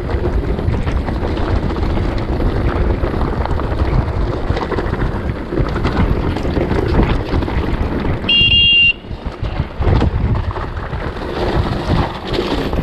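Mountain bike rattling and jolting down a rough, stony trail, with heavy wind buffeting on the camera's microphone. About eight seconds in, a brake squeals briefly in a high, steady tone that cuts off after about half a second.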